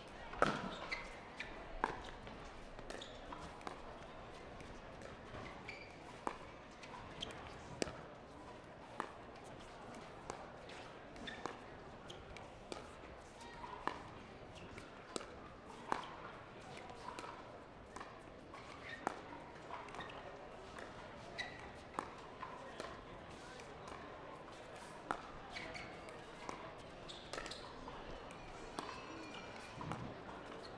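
Pickleball paddles striking the plastic ball in a long rally at the net, a sharp pop about once a second at an uneven pace.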